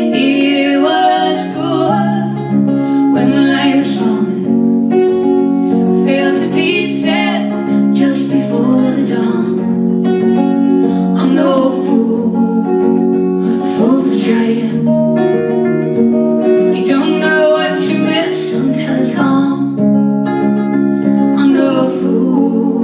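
Live acoustic duo: two acoustic guitars strummed, with women's voices singing over them in several stretches.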